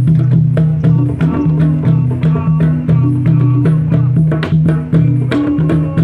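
Hand-drum circle of djembes and congas playing a steady fast rhythm, with a repeating low pitched line running underneath.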